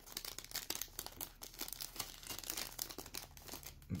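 Clear plastic bag crinkling as it is folded and wrapped over a small cardboard box, a dense run of small crackles.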